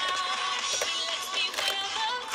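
Background music with a sung melody, holding and gliding notes over a steady accompaniment.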